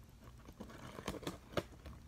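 A small blade scratching and clicking as it cuts the packing tape along the seam of a cardboard box: a few faint, short scrapes and ticks.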